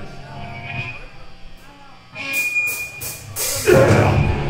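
Live metal band between songs: faint ringing from the amplified instruments, then four evenly spaced cymbal strokes counting in from about halfway, over a brief high feedback whistle, and the distorted electric guitars and drums crash in together near the end.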